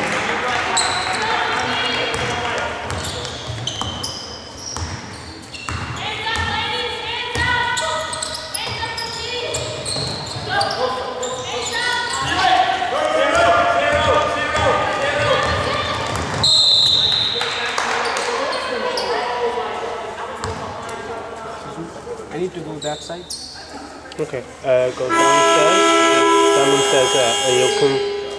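A basketball game in play in a large, echoing sports hall: the ball bouncing on the court amid players' and spectators' shouts. A short high whistle comes about 16 seconds in, and a loud held tone sounds near the end.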